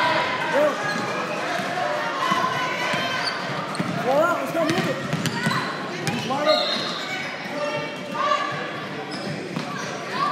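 A basketball being dribbled on a hardwood court amid overlapping shouts and chatter of players and spectators, all echoing in a large gym. There is a short high squeak about six and a half seconds in.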